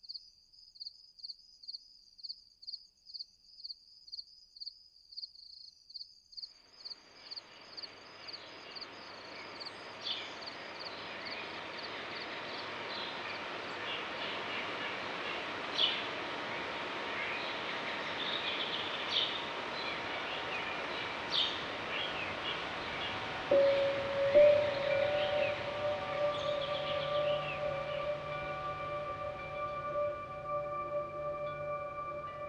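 Crickets chirping evenly, about two or three chirps a second, stop about six seconds in. A steady outdoor wash with scattered bird chirps then fades up. Near the end a sustained ringing musical tone enters and holds.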